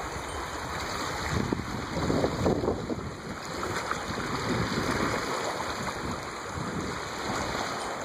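Wind rumbling and buffeting on the microphone over choppy lake water, with small waves lapping; the gusts are strongest about two seconds in.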